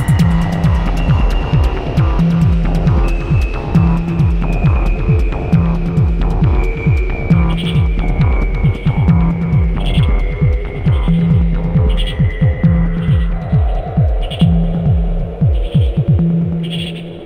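Ambient electronic synthesizer music: a low, throbbing synth bass pulse under a sustained low drone, with high synth tones drifting slowly in pitch. About halfway through, soft high pings come in at roughly one a second.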